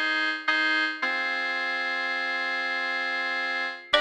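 Trap beat intro of sustained synthesizer keyboard chords with no drums or bass. Two short chords come first, then a long held chord from about a second in, which fades out near the end just as the drums come in.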